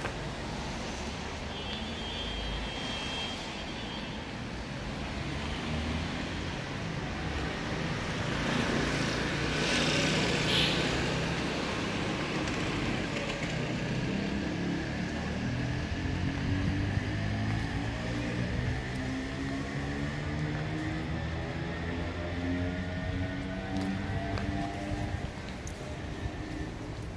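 Road traffic running steadily: a vehicle passes with a swell of road noise about ten seconds in, and through the second half an engine's pitch rises slowly as it gains speed.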